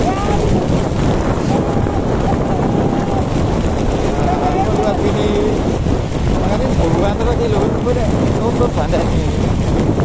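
Wind buffeting the microphone of a moving motorcycle, a steady rush with the bike's engine running underneath.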